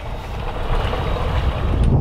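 Steady wind noise on the microphone, a low rumble with a hiss over it, on a small boat on open water. A small click near the end.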